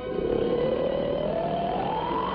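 A cartoon sound effect: one noisy glide that climbs steadily in pitch through the two seconds.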